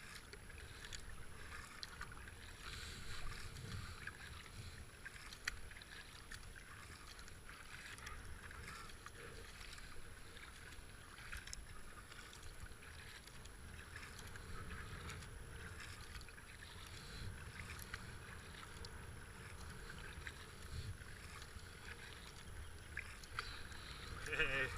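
Faint splashing and water swishing as a Swell double-bladed paddle dips into the river, stroke after stroke, driving a racing kayak along, over a low steady rumble.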